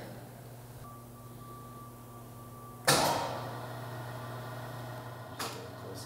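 Powered-up automatic edgebander giving a steady low hum, with a faint high whine in the first half. A sharp mechanical clunk comes about three seconds in and a lighter click near the end.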